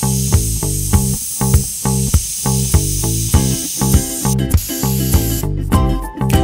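Background music with a steady beat, over the steady hiss of an airbrush spraying paint; the hiss cuts out near the end.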